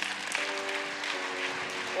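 Sustained keyboard chords, changing to a new chord about halfway through, under congregation applause.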